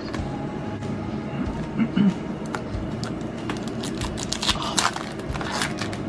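Foil trading-card booster-pack wrapper crinkling and tearing as it is opened, a quick run of crackles that is densest and loudest in the last two seconds.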